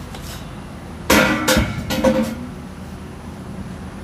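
Loose metal duct pieces clattering as they are handled and dropped: a burst of three loud clanks about a second in, each with a short metallic ring.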